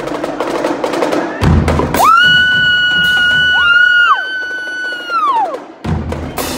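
Marching drumline of snare, tenor and bass drums with cymbals playing a fast pattern, ending with a hit about a second and a half in. The drums then mostly drop out under two long, overlapping, high-pitched whistle-like tones, each sliding up at the start and down at the end.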